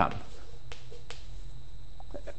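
Chalk tapping against a blackboard as figures are written: two sharp clicks under half a second apart, over a steady room hum.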